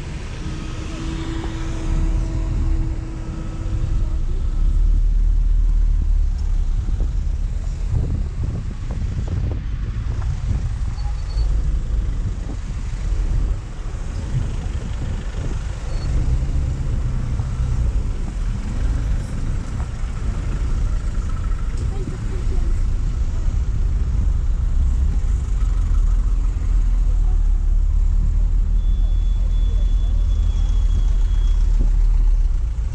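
Slow, congested street traffic heard from a moving vehicle: a steady low rumble of car and van engines and road noise. About a second in, a short steady tone sounds for a few seconds.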